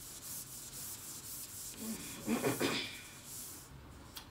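A person coughs once, a little past the middle, over a scratchy rustling hiss that stops shortly before the end.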